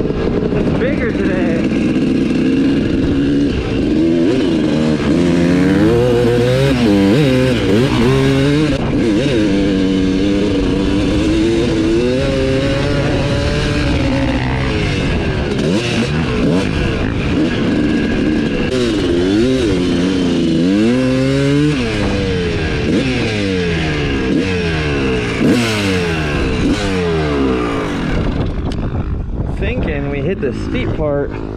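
Suzuki RM250 two-stroke single-cylinder dirt bike engine being ridden hard, its pitch repeatedly rising under throttle and dropping back through gear changes and throttle-offs.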